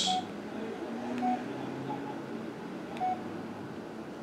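Samsung Gusto 3 flip phone keypad beeps as its keys are pressed: three short beeps at one pitch, the first at the start, then about a second later and about three seconds in.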